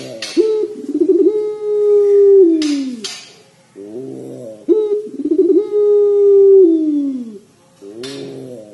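Puter pelung, a domestic ringneck dove kept for its song, cooing twice. Each call opens with a short stutter, then holds a long rolling coo that falls in pitch at the end. A brief hiss comes just before the second call.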